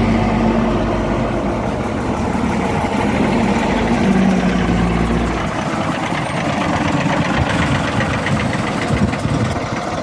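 Leyland National single-deck bus driving slowly past at close range, its diesel engine running. The deep engine rumble drops away abruptly about halfway through as the bus passes and moves off, leaving a lighter engine sound.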